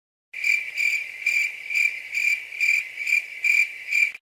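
Cricket chirping sound effect: a steady run of evenly spaced high chirps, a little over two a second, that starts and stops abruptly. This is the comic 'awkward silence' crickets cue.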